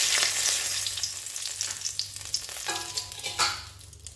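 Bay leaves sizzling in hot oil in a metal karahi. The sizzle starts loud as they hit the oil and fades gradually, with a brief burst of stirring about three seconds in.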